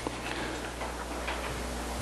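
Quiet classroom room tone: a steady low hum with faint hiss and a few faint ticks.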